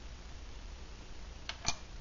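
Two light clicks close together, the second louder, as a small aluminium alcohol stove is set down on a workbench, over faint room noise.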